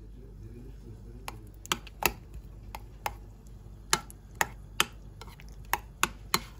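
Metal spoon stirring a thick white mixture in a glass bowl, clinking sharply against the glass about nine times at irregular intervals, starting about a second in.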